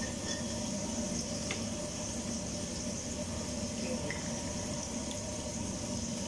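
Water running steadily, with a few faint light clicks.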